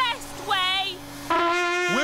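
A trumpet holds one long steady note, starting about 1.3 s in, over a steady low hum from a running vacuum cleaner. A short voice sound comes about half a second in.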